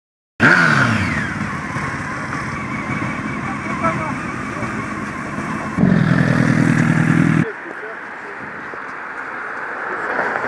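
Motorcycle engines running in a crowd, with a rev dropping away just after the start. About six seconds in, a louder engine runs steadily for a second and a half, then cuts off abruptly to a quieter mix of engines and voices.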